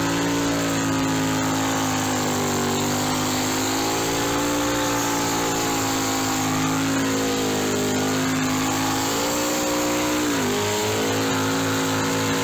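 Car engine held at high revs during a burnout, heard from inside the cabin. The pitch sags and recovers a couple of times, then drops about ten and a half seconds in as the revs come down.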